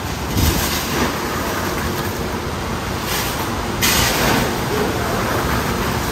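Ice rattling as it is scooped out of a cooler and shaken into a plastic bag, in a few noisy surges, the loudest from about three to four and a half seconds in, over a steady rushing noise.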